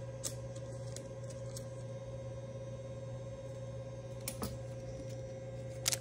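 A few light clicks and rustles of a baseball card being slipped into a clear plastic sleeve, heard about a quarter second in, near four and a half seconds and just before the end, over a steady low hum.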